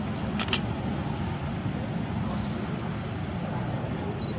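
Steady low background rumble, with a couple of short sharp clicks about half a second in.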